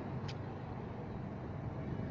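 Steady low outdoor rumble, with a brief high-pitched tick about a third of a second in.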